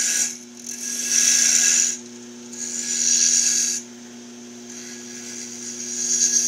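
Gouge cutting a wooden spindle whorl spinning on a wood lathe, shaping its top: cutting passes of about a second each with short pauses between, over the steady hum of the lathe motor.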